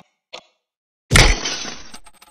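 Sound effect of a cartoon alarm clock smashing: a brief click, then about a second in a sudden loud crash of shattering pieces that rings on and fades.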